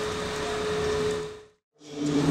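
Room tone of a large hall: a steady background hum with one thin sustained tone in it. It drops out to dead silence about one and a half seconds in, then returns just before the end.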